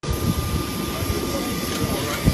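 Steady jet aircraft engine noise with a thin, constant high whine running through it, and people's voices underneath.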